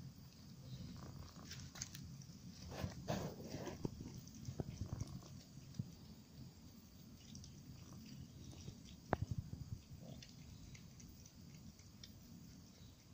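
A cat biting and chewing a mouse: faint, irregular crunching and small clicks, busiest in the first half, with one sharper click about nine seconds in.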